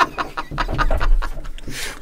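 A person laughing breathily in quick, short puffs of breath.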